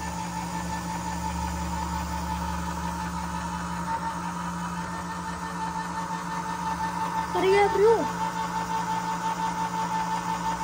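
Hamilton Beach Smooth Touch electric can opener's motor running with a steady hum as it turns a can and cuts around its rim. About seven and a half seconds in, a brief higher sound rises and falls over it, the loudest moment.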